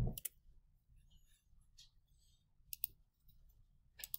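A few faint clicks of a computer mouse, two in quick succession a little before three seconds in.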